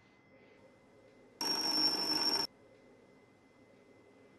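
A single high-pitched electronic ring about a second long, starting abruptly a little after a second in and cutting off suddenly, over quiet room tone.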